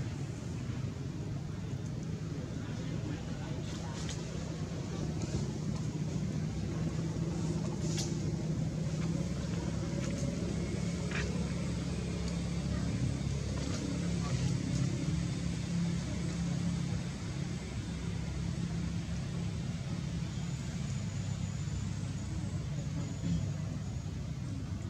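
A steady low background rumble, much like distant traffic, with a few faint clicks scattered through it.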